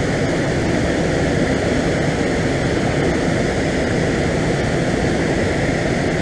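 Steady rushing of a fast, churned-up mountain river: an even roar that neither rises nor falls.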